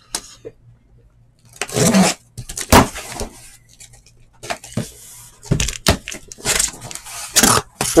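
Sealed cardboard trading-card hobby boxes being handled on a table: irregular rustling and scraping, with a few sharp knocks and clicks as boxes are set down.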